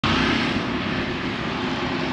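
A steady engine drone, with a low hum under a broad rush of noise.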